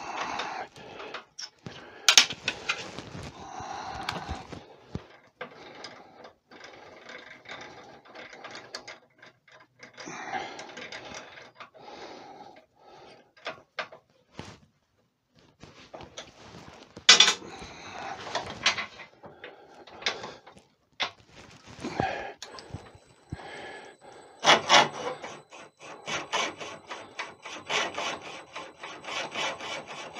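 Metal clicks, knocks and rattles of drill bits being changed and fitted in the lathe's tailstock drill chuck, in irregular bursts with short pauses. Late on, a faint steady high whine comes in and a quick run of ticks follows as the lathe is run up for drilling.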